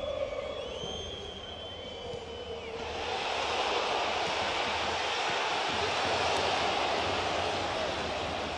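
Football stadium crowd: high whistles over a steady crowd noise, then a loud roar that swells about three seconds in as the ball reaches the goalmouth and holds to the end.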